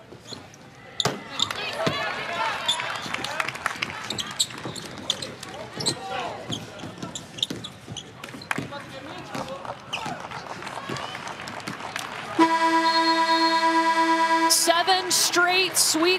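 Basketball court sounds: a ball bouncing on hardwood and players calling out as the clock runs down. About twelve seconds in, the arena's end-of-game horn sounds, a loud steady buzzer lasting about two seconds.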